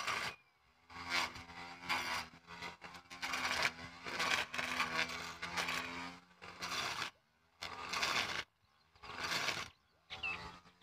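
Small electric grass cutter with its motor in the head, running with a low hum while its spinning blade scrapes and chops through leafy weeds. The sound comes in bursts, broken by several short silent gaps.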